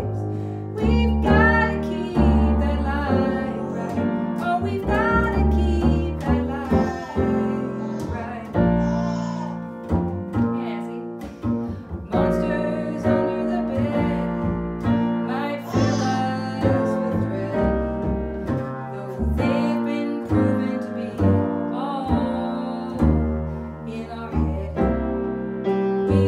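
A woman singing a song to her own piano accompaniment, with an upright double bass playing the bass line.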